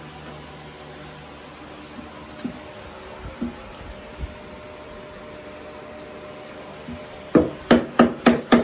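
Steady low hum of a shop fan with a few faint knocks, then near the end a quick run of sharp knocks of wood on wood, about four a second.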